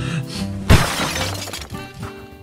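Background music with a sudden crash sound effect about two-thirds of a second in, dying away over about a second.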